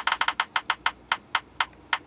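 Slot-machine sound effect of an online fruit-machine name picker: sharp reel clicks that slow steadily, from about ten a second to about four a second, as the spinning reels wind down toward a stop.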